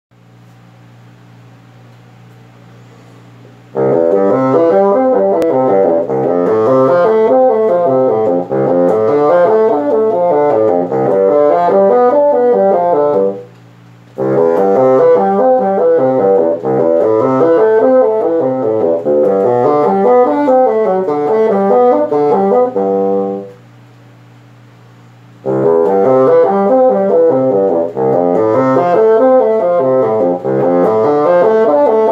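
Solo bassoon playing a fast étude of running notes. It comes in about four seconds in and stops twice briefly for breath, near the middle and again a few seconds later.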